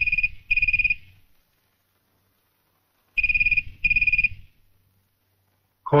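Telephone ringing in a double-ring pattern: two short rings at the start, then another two about three seconds later.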